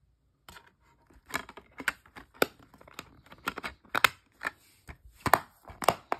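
Plastic DVD keep case and disc being handled: an irregular run of a dozen or so sharp plastic clicks and snaps, about two a second, as the disc goes back onto the case's hub and the case is shut.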